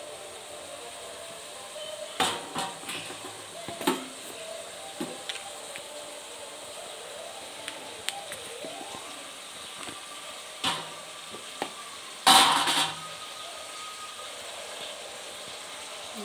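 Slotted metal spoon stirring vegetables in an aluminium pressure-cooker pot, clinking and scraping against the pot at intervals over a faint steady sizzle of frying. The loudest scrape comes about twelve seconds in.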